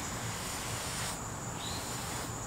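Damp sponge rubbing over brick pavers and mortar joints, the scrubbing easing off a little over a second in, over a steady high-pitched insect drone.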